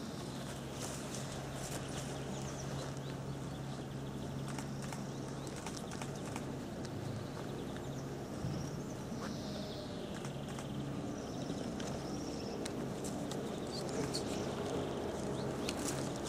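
Outdoor ambience: a steady low hum with birds chirping now and then, and scattered light clicks and knocks from a rope net of wooden-framed paintings being handled against a tree trunk.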